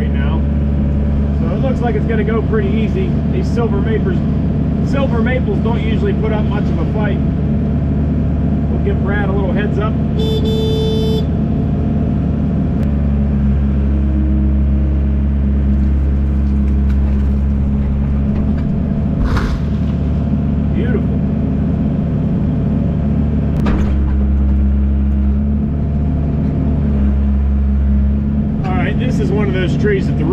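Diesel excavator engine running steadily, heard from inside the cab, its note rising and falling as the hydraulics take load while the boom and thumb work. A short beep sounds about ten seconds in, and two sharp knocks come later.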